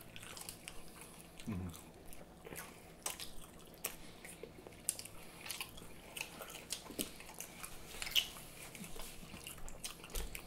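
Close-up mouth sounds of people chewing food: soft, irregular wet clicks and smacks, with a short hummed "mmm" about a second and a half in.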